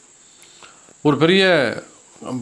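Faint, steady, high-pitched chirring of crickets in the background during a pause, with a man's voice speaking a short phrase about a second in.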